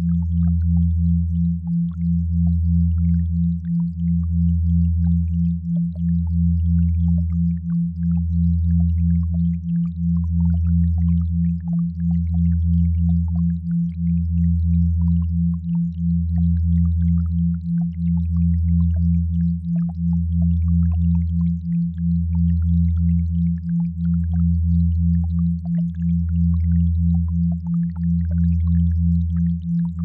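Synthesized binaural-beat tones: a deep hum that swells and fades about every two seconds, under a higher steady tone pulsing roughly twice a second, with faint scattered crackle above.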